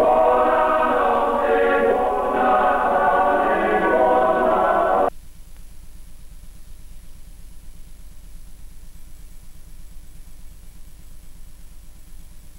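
Male choir singing a cappella, cut off abruptly mid-phrase about five seconds in as the recording ends. After that only a faint steady hiss and hum from the blank videotape remains.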